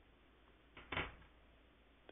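A single short clack about a second in, as a small plastic 3D-printer part is set down on a stone countertop, over a faint low hum.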